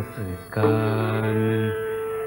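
Indian classical devotional singing with accompaniment: after a brief dip, a low voice holds one long, steady note over a sustained higher accompanying tone.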